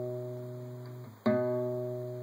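Acoustic guitar's fifth (A) string fretted at the 2nd fret, a low B, picked and left to ring and fade. About a second and a quarter in, the same note is picked again and rings on.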